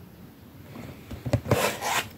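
A large cardboard box being handled and turned over: a few light knocks about halfway in, then a loud scraping rub of cardboard near the end.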